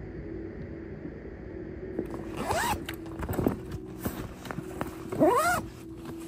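Zipper on a black fabric bag being pulled twice, each pull a quick rasp that rises and falls in pitch, the second louder, with rustling and small clicks of the bag being handled between the pulls.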